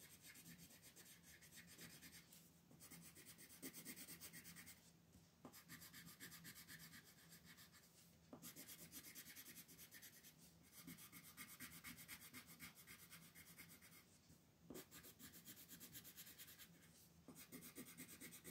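Faint scratching of a colored pencil on paper in quick back-and-forth shading strokes, coming in runs broken by brief pauses when the pencil lifts.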